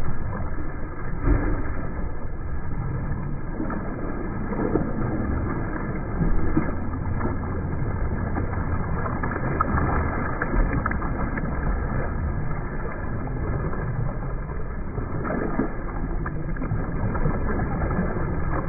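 Water splashing and churning from a swimmer's front-crawl arm strokes close by, over a steady low noise of moving water, with a few louder splashes along the way.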